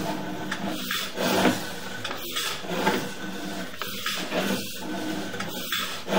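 Sewer inspection camera's push cable being pulled back out of the pipe: a continuous rubbing, scraping noise of the cable sliding and rattling, with a few faint knocks.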